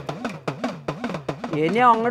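Idakka, the Kerala hourglass drum, struck quickly with a stick, about six strokes a second, each stroke's pitch swooping down and back up. A man's voice comes in with held, wavering notes near the end.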